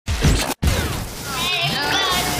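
A short crash-like sound effect for about half a second, cut off by a brief dropout. A voice over music then starts near the end.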